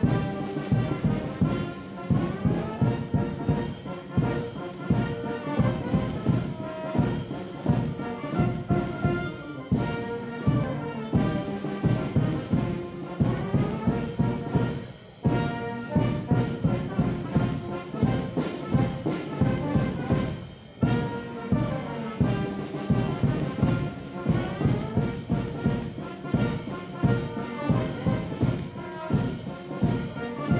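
Brass band playing a march with a steady beat, with two brief dips in the music partway through.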